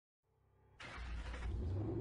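Logo intro sound effect: a low rumble fades in, then just under a second in a sudden loud rush with a heavy deep rumble takes over and holds.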